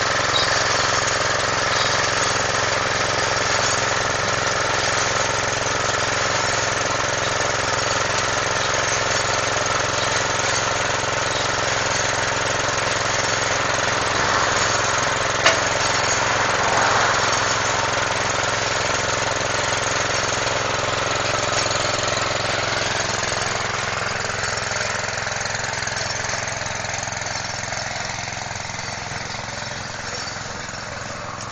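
An engine running steadily at a constant speed, with one sharp click about halfway through. The engine grows fainter over the last few seconds.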